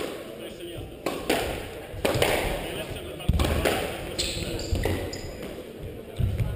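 Squash ball being struck by rackets and hitting the court walls during a rally, a series of sharp echoing hits, with sneakers squeaking on the wooden floor a few seconds in.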